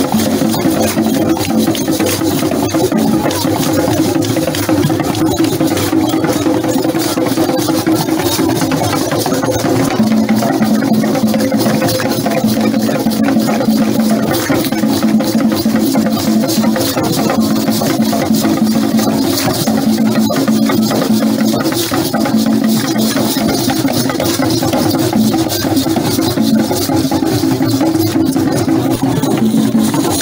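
Traditional West African drumming: drums and dense, rapid clicking percussion over steady, low held tones.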